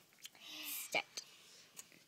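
A child whispering a short word, "step", with a few light clicks around it.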